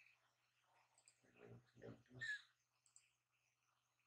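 Near-silent room tone with a faint steady low hum and a few faint computer mouse clicks, broken by a brief murmured word or two a little past the middle.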